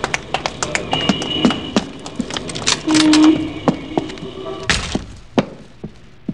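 Radio-play sound effects: quick footsteps on a hard floor, with a heavy thunk about five seconds in.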